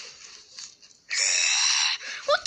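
A high-pitched, breathy shriek from a child's voice, held for nearly a second, starting about a second in after a faint quiet stretch.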